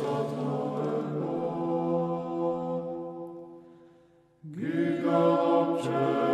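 Church choir chanting a cappella in Georgian Orthodox style: long held chords move in slow steps and fade away about four seconds in, then a new chord comes in.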